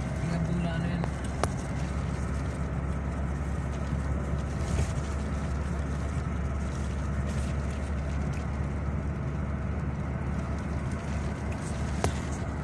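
Steady low rumble of road and engine noise inside a moving vehicle, with a single sharp click about a second and a half in.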